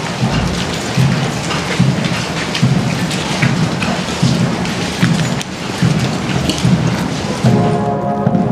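Military band drums beating a slow funeral march, one low beat about every 0.8 seconds, under a dense, steady rushing noise. A band's sustained tones come in near the end.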